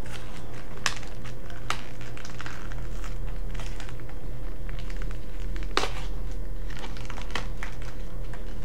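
Packaging of a baseball card pack being torn and pulled open by hand: crinkling with several sharp crackles, over a steady low hum.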